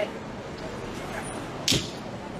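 Steady background noise inside an ambulance, then one sharp bang near the end.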